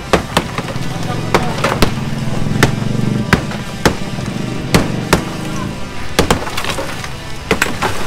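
Sledgehammer and steel bar striking a concrete wall, more than a dozen sharp, irregular blows with concrete breaking off, while a wall obstruction is demolished. Background music and some voices run underneath.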